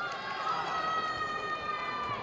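A long, high-pitched drawn-out shout from a spectator, held steady for over a second and dipping slightly at the end, over the noise of the arena crowd.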